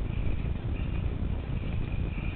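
Low, steady rumbling noise on the camera's microphone from wind and camera movement, with no distinct knocks or clicks.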